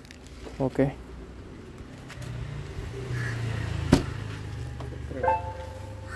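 Ola S1 Pro electric scooter's seat being shut over its storage trunk, latching with one sharp click about four seconds in, over a low steady hum.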